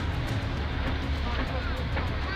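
Street traffic noise: a steady low rumble of passing cars, with faint voices in the background.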